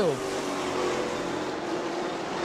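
Several Sportsman stock car engines running together at racing speed along the straightaway, heard from across the track as a steady, distant hum.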